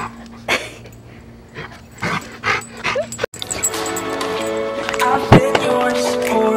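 A yellow Labrador nosing around a plastic skateboard, with a few short knocks and a brief high whimper about three seconds in. Then an abrupt cut to background music with steady sustained notes.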